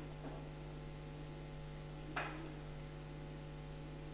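Steady electrical mains hum with several steady tones layered in it, and a single short faint noise about two seconds in.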